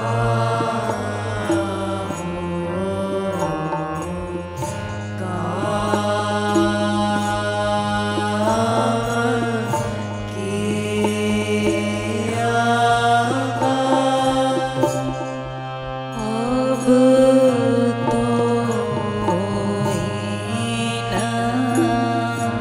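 Kirtan: voices singing a Hindi devotional bhajan over a steady held drone, with hand-drum strokes keeping the rhythm.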